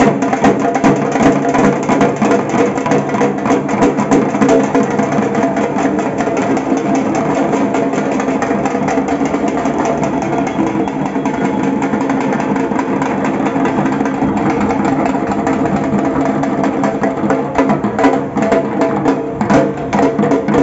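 A group of barrel drums struck with sticks, playing a fast, dense folk rhythm over steady pitched tones, with the strokes getting louder near the end.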